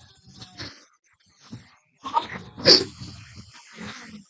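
Men groaning and sighing in dismay at a near miss, soft at first, with a louder breathy anguished outburst a little over halfway through.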